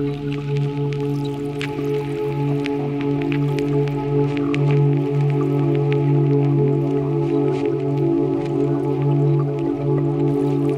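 Ambient Eurorack modular synthesizer music: a sustained low drone chord held steady, with scattered short clicks and plinks sprinkled irregularly above it.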